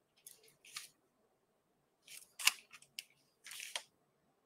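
Faint, brief scratches and taps of a hand handling small painting tools: a wooden toothpick and a paint palette. A handful of short scrapes include one sharp click about two and a half seconds in, the loudest sound, and a longer scrape near the end.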